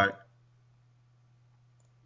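The end of a spoken word, then near silence with only a faint steady low hum from the recording.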